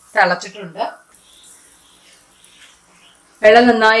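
Water boiling in a cooking pot with whole spices, a faint steady bubbling heard between a woman's spoken words at the start and near the end.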